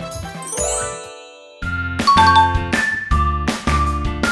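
A bright twinkling chime sound effect rings out at the start and dies away. About a second and a half in, cheerful background music with a steady beat begins.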